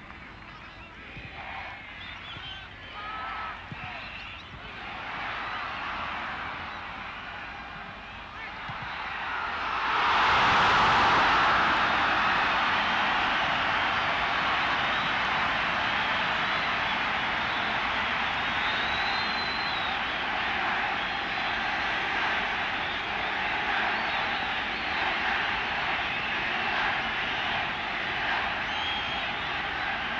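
Stadium crowd noise that swells suddenly into a loud, sustained roar about ten seconds in and stays up, with a voice heard faintly before the swell.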